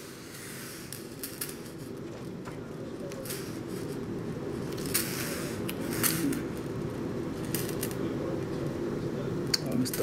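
Pen scratching across a paper form on a counter, with small scratchy marks and light taps of paper, over a steady low room murmur.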